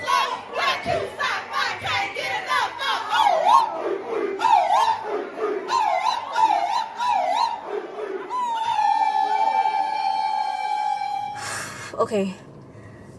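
A crowd shouting and chanting together over music with a steady beat. Near the end, a single voice holds one long high note for about three seconds before it cuts off suddenly.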